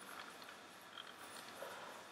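Very quiet room tone: a faint steady hiss with one tiny tick about a second in.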